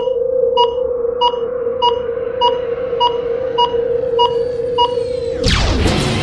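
Electronic logo sound effect: a steady synthesized drone with a short beep about every 0.6 seconds, like a sonar ping or monitor pulse. The drone and beeps stop near the end and give way to a sweeping whoosh.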